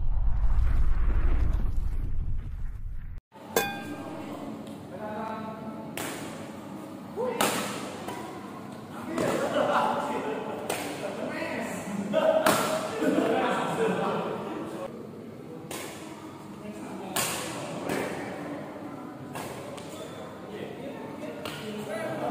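Badminton rackets striking a shuttlecock in a rally, sharp hits every one to two seconds that echo in a large indoor hall. They follow a loud, deep rumbling sound effect that cuts off suddenly about three seconds in.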